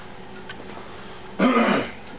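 A man clearing his throat once, about one and a half seconds in, short and loud.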